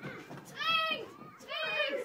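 Girls' high-pitched voices crying out twice, two short wordless cries about a second apart during a play-fight.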